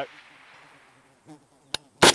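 Echo of a .308 rifle shot dying away over the first half second, then a quiet lull and a single sharp click a little before the end.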